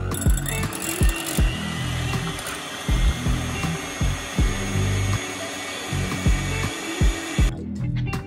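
Electric hand mixer running steadily as its beaters whip cream in a glass bowl, a high motor whine that cuts off shortly before the end. Background music with a regular beat plays underneath.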